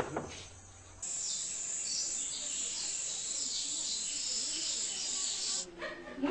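A high-pitched outdoor chorus of chirping insects and birds that comes in abruptly about a second in and cuts off near the end.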